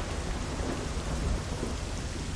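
Heavy rain pouring down steadily, with a low rumble of thunder underneath.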